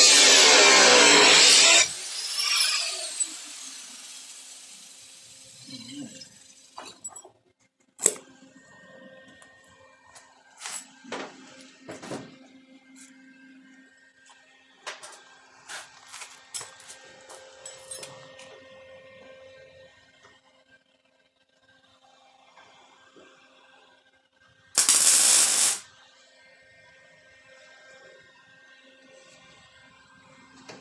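Angle grinder cutting into the steel body seam of a 1957 Chevrolet 210 quarter panel, running loud for about two seconds, then switched off and winding down with a falling whine. Light knocks and clicks of handling follow, and near the end there is a second short burst of grinding.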